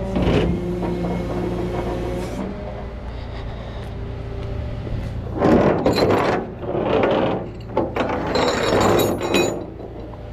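Steel winch hook, rings and chain hooks clanking and scraping against a tow truck's steel diamond-plate deck as they are handled, loudest in a run of knocks and clinks in the second half, over a steady low hum of the truck's engine running.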